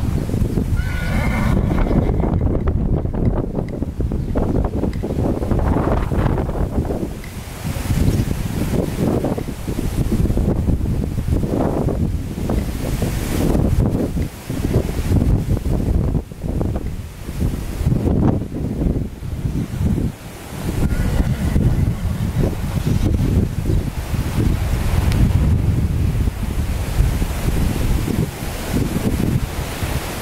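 A horse whinnying near the start and again faintly about two-thirds of the way through, over a steady rumble of wind on the microphone.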